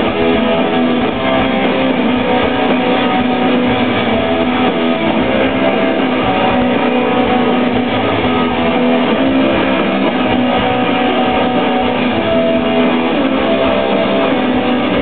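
Live rock band playing an instrumental, loud and steady: electric guitars over drums, with no singing.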